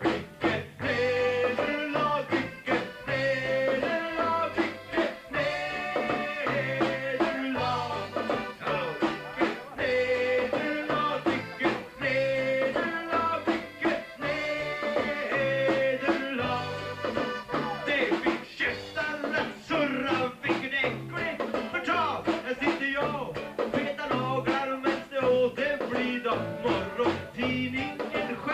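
Live band playing an upbeat song, with men singing into microphones over guitars and a steady bass and drum beat.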